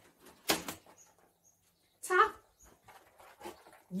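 A dog fetching a tossed toy ball: a sharp knock about half a second in, then faint scuffles and a few tiny high squeaks as it picks the ball up.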